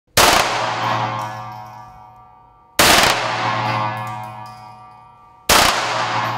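Three pistol shots fired in an indoor concrete range, about two and a half seconds apart, each cutting in sharply and ringing away in a long fading tail. Music runs underneath.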